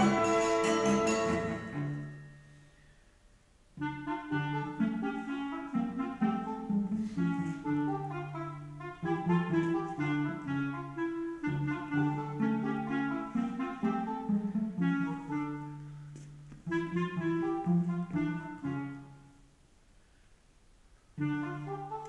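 Live chamber-ensemble music recorded on a phone, with low-fi quality. A loud full chord dies away in the first two seconds and is followed by a brief near-silent pause. A run of separate pitched notes then plays over a low sustained bass line, breaks off for a second or so near the end, and starts again.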